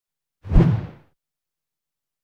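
A single whoosh sound effect with a deep boom at its onset, about half a second in, fading out within about half a second.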